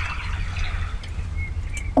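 Small waves lapping at the water's edge, with a few short, thin bird chirps over a steady low rumble.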